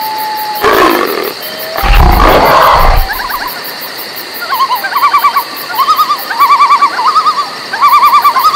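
A lion roaring: two deep roars in the first three seconds, the second longer and louder. After it, a high warbling call repeats in short quick runs.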